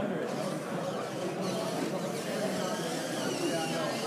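Indistinct chatter of many voices in a crowded hall, steady throughout, with no one voice standing out.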